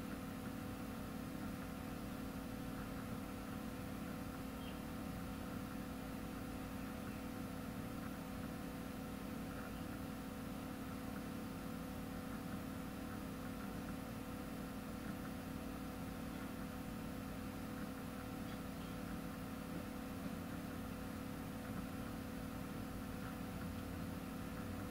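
Steady room tone: a constant low hum with a few fixed tones over even hiss.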